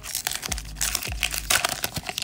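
Foil wrapper of an Upper Deck hockey card pack crinkling and crackling as it is torn open by hand.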